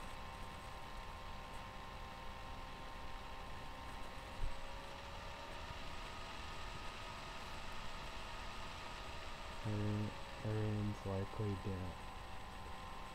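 Low steady room hum with faint constant tones, and a single knock about four seconds in. Near the end a man's low voice speaks briefly in short broken bits.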